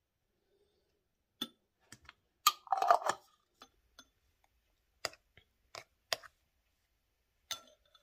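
A metal teaspoon clinking against a glass jam jar and a ceramic bowl as jam is spooned out: scattered sharp clinks, with a short run of scraping clinks about three seconds in.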